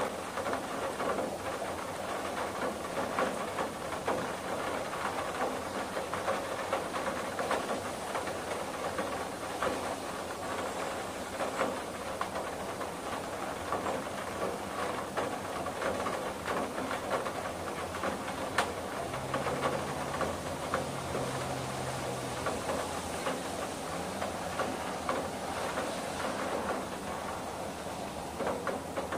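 Steady rain on a window: an even hiss dense with small drop ticks, with one sharper tick about two-thirds of the way through.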